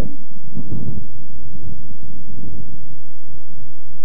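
Wind buffeting the camcorder's microphone: a loud, steady low rumble.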